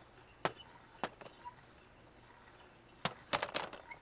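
A few light clicks or taps over a quiet background: one about half a second in, another a second in, then a quick run of several near the end.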